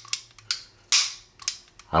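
Beretta 92X Performance pistol being dry-fired in double action: about four sharp metallic clicks of the hammer falling, roughly half a second apart.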